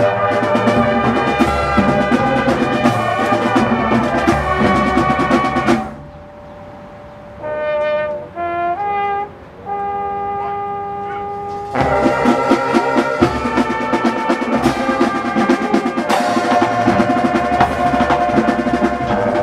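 Drum corps hornline and drumline playing at full volume. About six seconds in the ensemble drops away, the horns play a few held notes that change pitch, and near twelve seconds the full ensemble comes back in with the drums.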